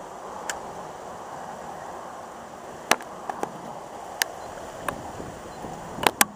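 Steady hiss of a boat on the water, with a handful of sharp clicks and taps scattered through it, the loudest about three seconds in and another pair right at the end, from fishing tackle being handled.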